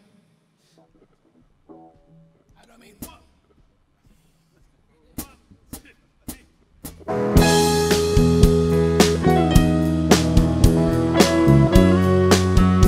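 A few faint electric guitar notes, then four drumstick clicks about half a second apart counting in, and about seven seconds in a rock band comes in loud with electric guitar and drum kit.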